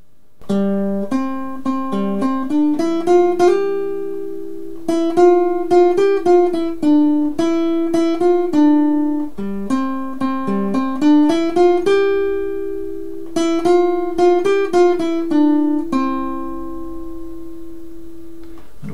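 Nylon-string classical guitar playing a slow hymn tune as a bare single-note melody without chords. It goes in four phrases with short pauses between them, and the last note is left ringing.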